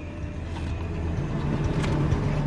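Car engine idling, a steady low hum heard from inside the car's cabin, growing slightly louder over the two seconds.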